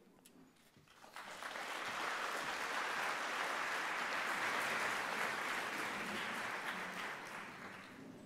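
Audience applauding. The clapping starts about a second in, holds steady, then fades away near the end.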